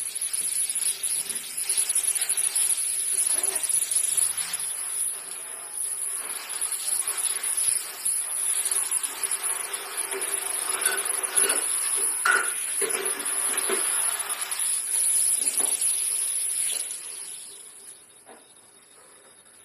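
Countertop jug blender motor running steadily at speed, puréeing fruit into juice, with a high-pitched whine over the churning of the liquid. It is switched off near the end and the sound falls away.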